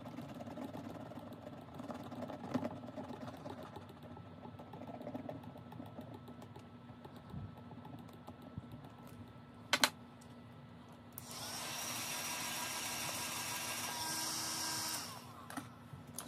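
A scratch-off coating being scratched off a paper savings-challenge card: a run of faint, scratchy clicks, with one sharper tap a little after the middle. Near the end a steadier hissing noise runs for about four seconds.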